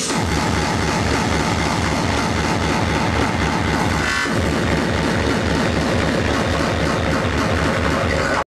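Speedcore played loud through a club sound system: a very fast, pounding kick drum kicks in suddenly and drives steadily, with a brief sweeping break about four seconds in.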